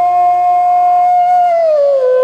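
Bansuri (Indian bamboo flute) holding one long note, then gliding down in pitch near the end, over a steady low drone.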